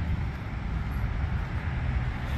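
Steady low rumble of road traffic from a busy nearby road, with no distinct events.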